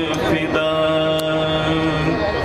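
A single voice chanting over a steady low drone: it glides briefly, then holds one long steady note from about half a second in, breaking off just before the end.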